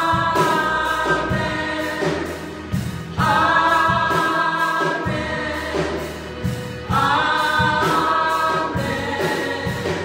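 A gospel vocal group of five women singing in harmony through microphones, backed by drums. New sung phrases come in about three and seven seconds in.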